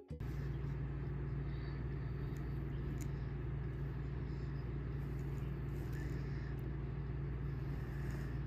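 Steady low background hum or rumble, with a few faint light ticks over it.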